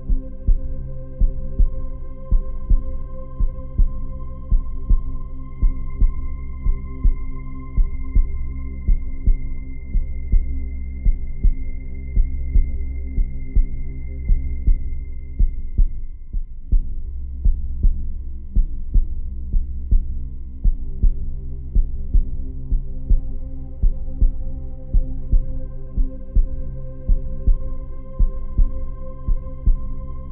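Suspense film underscore: a heartbeat-like low thump pulsing steadily under a sustained droning pad. A thin high tone swells in about five seconds in and drops away around sixteen seconds, after which the lower drone carries on.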